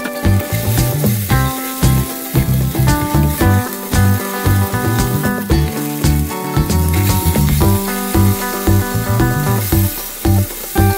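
Potato, onion and tomato pieces sizzling in a frying pan as they are stir-fried with chopsticks. Background music with a steady bass beat plays over it.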